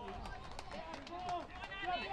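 High-pitched shouts and calls from voices around a football pitch during open play, getting louder over the last second, over steady outdoor ground noise.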